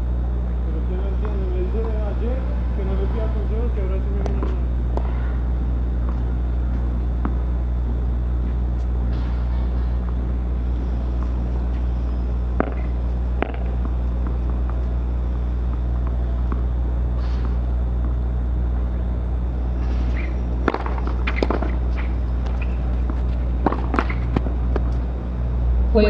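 Steady low hum of court ambience, with faint distant voices in the first few seconds. Later come a few sharp knocks of a tennis ball being bounced and struck: a couple of single knocks about halfway through, then a cluster of hits near the end.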